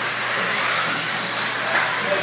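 Several radio-controlled 4wd buggies racing on a carpet track: a steady mix of motor and drivetrain whine and tyre noise.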